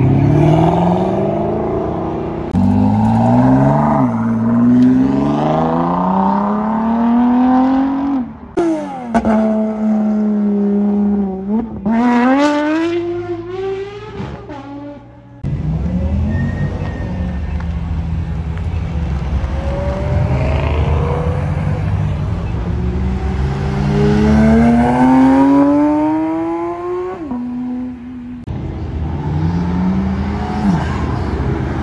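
Car engines accelerating hard through the gears, several times over. Each time the engine note climbs steadily and then drops back at an upshift. One run stops abruptly about halfway through.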